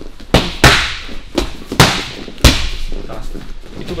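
Boxing gloves striking focus mitts in a punch combination: about five sharp smacks within the first two and a half seconds, uneven in spacing, with the three loudest near the one-second, two-second and two-and-a-half-second marks.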